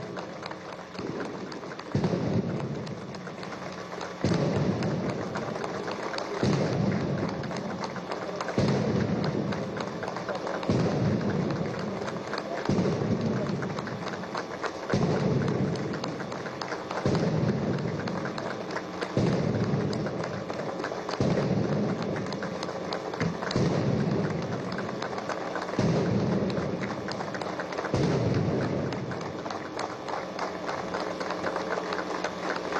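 Artillery saluting guns firing a salvo, one boom about every two seconds, each dying away over a second or so, over continuous applause from a crowd.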